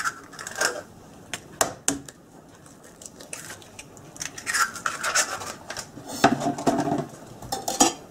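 An egg cracked on the edge of a plastic mixing bowl and dropped onto minced meat: a few sharp clicks of shell in the first two seconds, then light scraping and clatter of shell and a spoon against the bowl.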